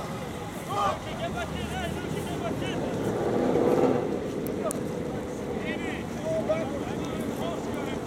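Distant shouts and calls from voices across an open field, over a steady rumble of wind on the microphone that swells for about a second around the middle.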